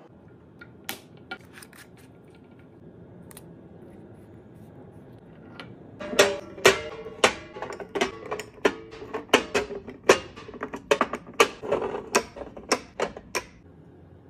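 Glass spice jars clinking as they are set down against one another in a drawer: a few faint taps at first, then from about six seconds in a quick, irregular run of sharp clinks, each with a short glassy ring.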